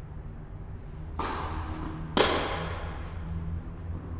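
Tennis ball struck twice by rackets about a second apart, the second hit louder and closer, each with an echo in the large indoor hall.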